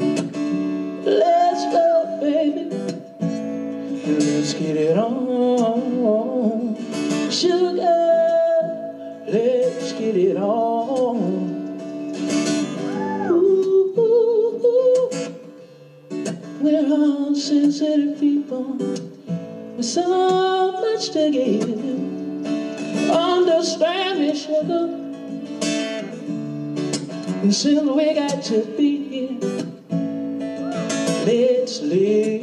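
A man singing live to his own acoustic guitar, with strummed and picked chords under a sung melody.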